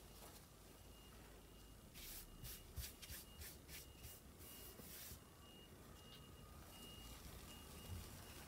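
Hands rubbing a sheet of thin paper down onto an inked gelli plate: a faint run of about six short brushing strokes in the middle.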